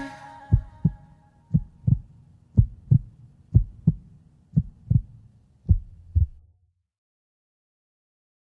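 Heartbeat sound effect closing out the song: six double low thumps, about one pair a second, under the last chord as it dies away in the first second. The beats stop a little past six seconds in.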